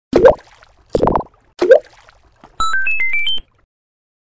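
Intro logo sound effects: three quick cartoon-like pops or bloops. These are followed by a fast run of about six bright electronic chime tones, mostly climbing in pitch, that stops abruptly.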